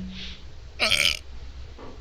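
A man burps once, a short belch falling in pitch, about a second in.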